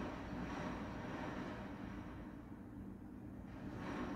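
Faint, steady low background rumble with no distinct events.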